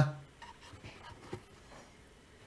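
Faint rubbing and handling of a soft, flexible rubber headlight-housing dust cover as fingers work it loose, with a couple of small taps about half a second and just over a second in.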